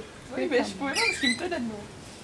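People's voices, laughing and talking indistinctly.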